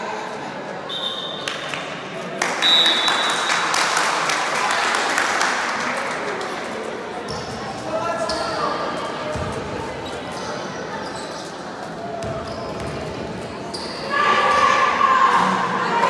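Basketball gym: spectators' voices and shouts echoing in a large hall, a basketball bouncing on the wooden court, and two short high whistle blasts from the referee in the first few seconds.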